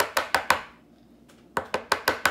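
A hard plastic card top loader tapped repeatedly on a wooden tabletop to settle the card inside it. The taps come in two quick runs of about six a second, the second starting about a second and a half in.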